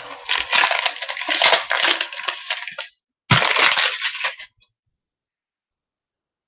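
Wrapper of a Panini Vertex football card pack crinkling and tearing as the pack is opened by hand, in two stretches, the second starting about three seconds in.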